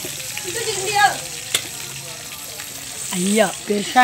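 Crab pieces frying in oil in a metal kadai over an open wood fire, a steady sizzle throughout. A single sharp click comes about halfway through, and voices call out briefly early on and again near the end.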